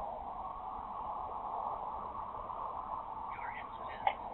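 Steady road and engine noise inside a patrol vehicle's cabin while it drives along the highway, with faint radio voice traces near the end.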